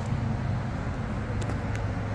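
Steady rumble of road traffic going by.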